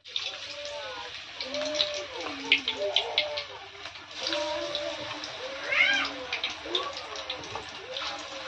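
Radish pakora batter crackling and sizzling as it is dropped into hot oil in an iron kadai, with short rising-and-falling calls like meowing repeating about seven times over it.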